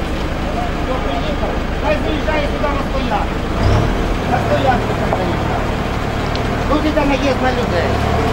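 Engine of a flatbed truck with a loader crane running as the truck moves slowly past, revving up about three and a half seconds in. Voices talk in the background.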